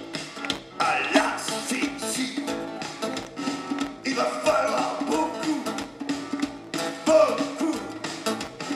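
Live band playing an amplified song, with a drum kit, guitars and keyboards, heard from the audience.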